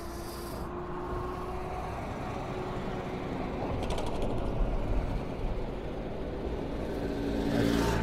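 Road traffic beside a bridge footpath: a lorry drives past about halfway through, its engine noise building over a steady low rumble, with a brief rattle as it goes by.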